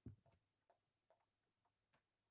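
Near silence with a few faint, scattered clicks, about four in two seconds.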